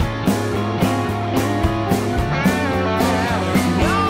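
Rockabilly big-band music with no singing: drums keep a steady beat about twice a second under bass, electric guitar and held instrumental notes.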